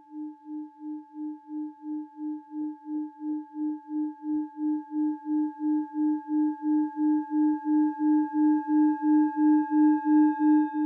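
Singing bowl ringing with one steady tone and fainter overtones, wavering in a pulse about three times a second and growing gradually louder.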